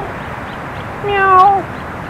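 A calf calling once, a short bawl of about half a second near the middle, holding a steady pitch and dropping slightly at the end.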